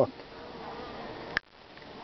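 Honeybees on an open brood frame buzzing in a steady, fairly faint hum. A brief sharp click comes about one and a half seconds in, and the hum is quieter after it.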